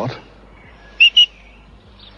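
Two short, high shepherd's whistle blasts in quick succession about a second in: a sheepdog handler's whistle command.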